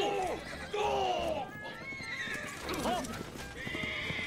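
A horse neighing several times in an anime soundtrack, with voices shouting "whoa" over background music.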